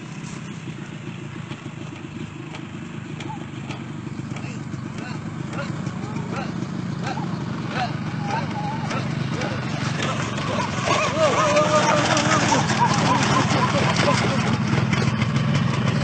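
Yamaha RXZ135 two-stroke single-cylinder motorcycle engine running at low revs as the bike rolls down concrete stairs, growing steadily louder as it comes closer. Voices talk over it in the second half.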